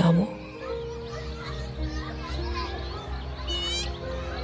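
Soft background music of slow, sustained notes over a low drone. Faint small high calls are scattered through it, and a short rising high call comes near the end.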